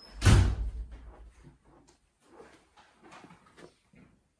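Sliding glass patio door rolled open: a loud rush with a low rumble about a quarter second in, fading within a second. Faint light knocks follow.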